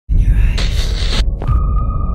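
Deep throbbing hum with a hissing swell, then a steady high tone comes in about one and a half seconds in.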